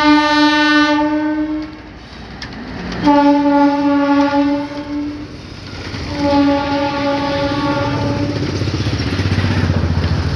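Train locomotive's horn sounding three long blasts of about two seconds each at one steady pitch, the first already sounding as it begins, while the passenger train's coaches rumble and clatter past, the rumble growing louder near the end.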